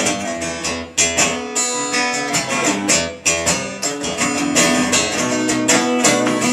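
Acoustic guitar solo played live: quick strummed chords and picked notes in a steady rhythm, with no singing.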